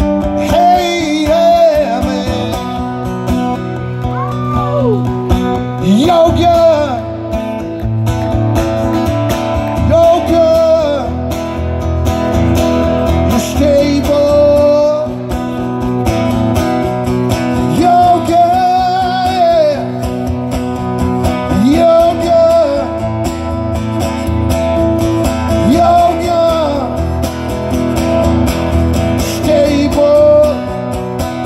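Solo acoustic guitar strummed steadily, with a sliding, bending melody line sung over it and no clear words.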